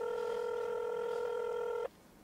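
Telephone ringing tone from a smartphone as a call is placed: one steady electronic tone about two seconds long that cuts off suddenly.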